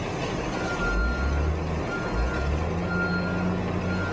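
Wheel loader's diesel engine running, with a high-pitched reversing alarm beeping on and off.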